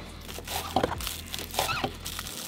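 Kitchen knife chopping green onions on a plastic cutting board: several short, crisp cuts through the stalks, each ending in a tap of the blade on the board.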